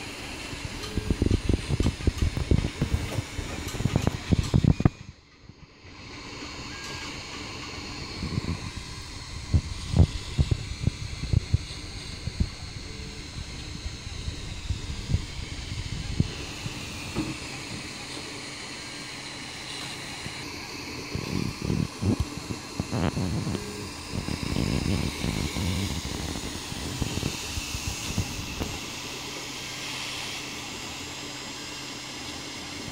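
Home-built 3D printer at work: its stepper motors buzz and thump in irregular bursts as the print head and bed move, over a steady fan hiss. The sound breaks off briefly about five seconds in.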